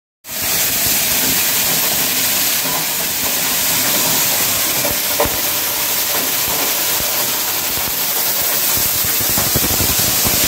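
Food-processing machine running with a loud, steady hiss that cuts in abruptly right at the start.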